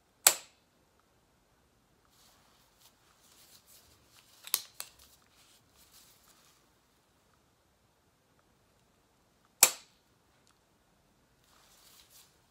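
Hyaluron pen, a spring-loaded needle-free filler injector, firing with a sharp snap, twice: just after the start and about nine and a half seconds in. A quieter click comes about four and a half seconds in, among faint rustling.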